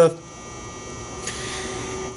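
A pause in a man's talk: a steady electrical hum in a large room, with a soft breath in the second half, just before speech resumes.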